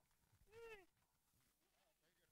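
Near silence, broken about half a second in by a single short, high-pitched cry that rises and then falls in pitch.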